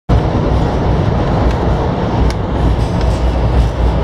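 Steady loud running rumble heard from inside a moving train car, with a few faint clicks over it.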